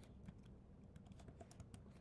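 Faint typing on a computer keyboard: a quick, irregular run of key clicks as letters are entered.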